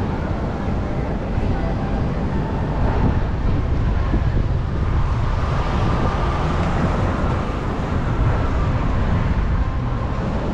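Busy city street noise: steady road traffic, with a crowd's voices mixed in.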